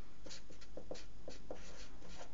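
Marker pen writing on paper: a quick run of short strokes, about four or five a second.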